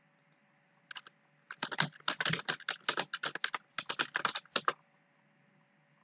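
Typing on a computer keyboard: a couple of quick clicks about a second in, then a rapid run of keystrokes lasting about three seconds that stops near the end.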